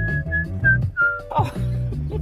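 A person whistling by mouth: a long held note that breaks off, then three short notes, the last a little lower and sliding down. Music plays steadily underneath.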